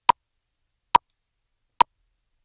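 Metronome click count-in: three short, sharp, identical clicks about 0.85 s apart, with dead silence between them, counting in the drum beat that follows.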